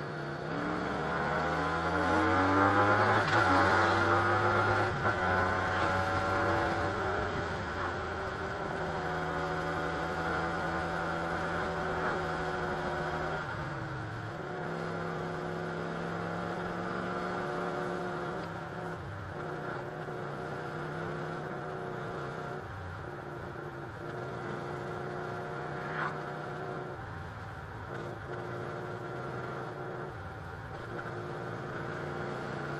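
Benelli Leoncino 250's single-cylinder engine accelerating, its pitch rising over the first few seconds, then running steadily at cruising speed, with wind and road noise over the ride.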